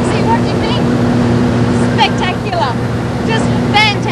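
Seaplane engine and propeller droning steadily, heard from inside the cabin, with passengers' voices talking over it.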